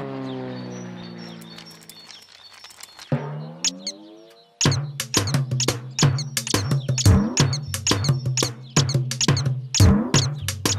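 Cartoon airplane engine hum fading away over the first two seconds, then a short rising glide. From about halfway through, fast, uneven drumbeats on a toy drum over a steady low note.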